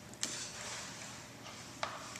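Water pouring in a thin stream from one plastic bottle into a two-liter plastic bottle: a steady trickle, with two sharp clicks, one just after the start and one near the end.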